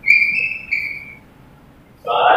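Chalk squeaking against a blackboard while writing: two high-pitched squeals back to back within about the first second, then quiet.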